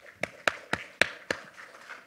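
Five sharp hand claps in an even rhythm, about four a second, close to the microphone.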